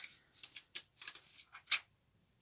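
Faint, scattered small taps and ticks of a toddler's fingers on a plastic eyeshadow palette and compact mirror, about half a dozen light clicks with the clearest near the end.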